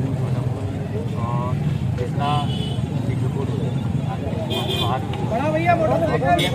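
Scattered voices of people crowded around an interview, short bits of talk over a steady low rumble, with talk growing busier near the end.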